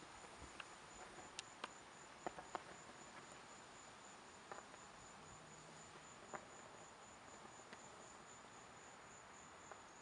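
Faint, steady high-pitched chirping of a cricket, pulsing evenly, with a few scattered soft clicks.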